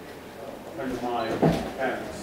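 Quiet, untranscribed talking with a single dull knock a little past halfway through.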